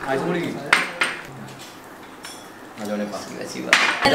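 Spoons and cutlery clinking against ceramic plates and cups during a meal: a few sharp clinks, the loudest near the end.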